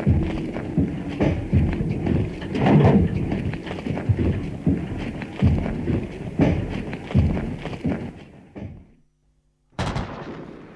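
A dense run of irregular thuds and bangs, fading out about nine seconds in, followed by a single sharp bang at the very end.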